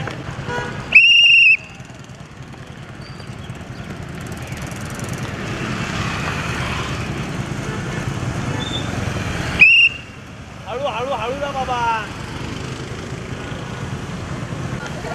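Two loud blasts on a whistle, a longer one about a second in and a short one near ten seconds, over a steady low rumble of road traffic and scooter engines; a few voices call out just after the second blast.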